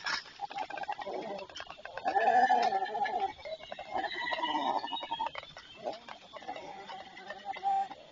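White stork chick giving a series of drawn-out, wavering distress cries, the loudest about two seconds in, as it is attacked on the nest by a goshawk. Scattered rustling and clicks of wings and nest twigs come between the cries.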